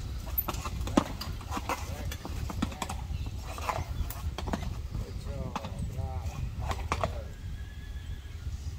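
Iron-shod hooves of a harnessed pair of Friesian horses clopping irregularly on brick paving as they shift and step in place. A horse whinnies briefly past the middle.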